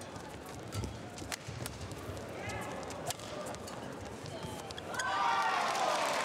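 Badminton rally: several sharp racket strikes on the shuttlecock and shoes squeaking on the court, with crowd voices rising about five seconds in as the point is won with a net touch.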